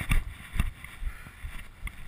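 Running footfalls on a muddy dirt trail, a dull thump roughly every half second, picked up through a chest-mounted GoPro along with rustling wind noise on the microphone.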